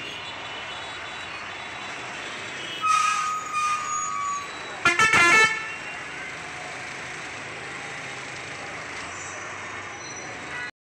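Busy town street traffic with a bus moving slowly past close by. A vehicle horn toots about three seconds in, and a louder horn honk follows about five seconds in.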